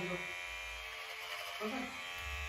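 Corded electric hair clippers running with a steady buzz as they cut through long, thick hair.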